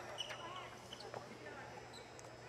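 Faint basketball-gym ambience: distant voices and a few soft knocks.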